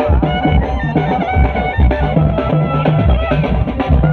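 Live Dhimsa dance music: drums beating a steady rhythm under a wavering, sliding melody from a reed pipe.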